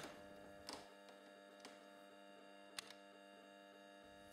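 Near silence: a faint steady electrical hum, with one faint click late on.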